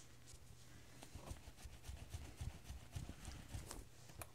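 Faint rubbing and soft, irregular knocks of a polishing cloth worked by hand over a brass ceiling-fan motor housing as a glaze is applied in straight strokes, over a faint steady low hum.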